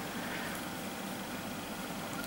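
Steady, faint background hiss with no distinct sounds: room tone.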